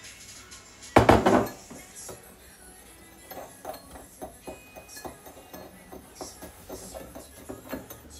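A metal spoon stirring sugar and cinnamon in a small ceramic bowl, clinking against the sides in a quick, irregular run of light taps. A louder thump about a second in.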